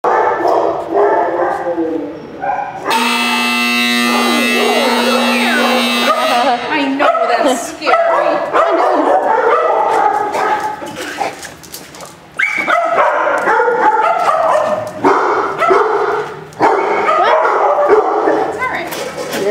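Many kennelled dogs barking and yipping at once, overlapping without let-up. About three seconds in, a steady tone sounds for about three seconds.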